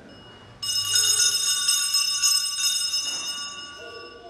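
A set of small altar (sanctus) bells shaken, starting suddenly about half a second in: a bright cluster of high ringing tones that keeps going and then fades near the end. They are rung at communion.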